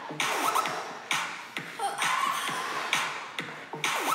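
Background electronic music with a steady beat of about two strokes a second.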